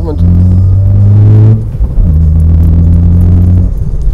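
Car engine pulling hard under acceleration, heard from inside the cabin. Its drone rises in pitch, breaks off for an upshift about a second and a half in, then picks up lower and climbs again.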